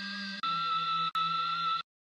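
A sampled music chop played from the on-screen keyboard of Logic Pro for iPad's Quick Sampler, sounding as a sustained pitched note. About half a second in it is retriggered louder and lower in pitch, it is struck again about a second in, and it cuts off sharply near the end.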